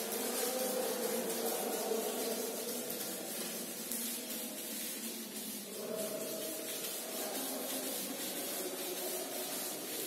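Hand-held whiteboard eraser rubbing back and forth across a whiteboard, wiping off marker writing.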